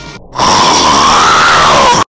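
A very loud, distorted scream bursts in about half a second in, its pitch rising and then falling away, and cuts off suddenly at the end. Before it, a short tail of light music plays.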